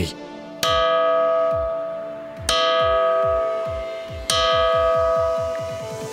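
A diabase boulder is struck three times with a small hammer, about two seconds apart. Each blow rings out with a clear, bell-like tone that fades slowly.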